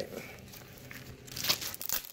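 Bubble wrap and packaging crinkling and rustling as they are unwrapped by hand. The rustling is soft at first, with louder crackles in the second half.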